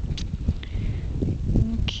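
Wind buffeting the camera microphone, a low, uneven rumble.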